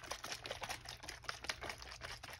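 Faint, rapid, irregular clicking and tapping of a plastic pomegranate juice bottle being shaken and handled.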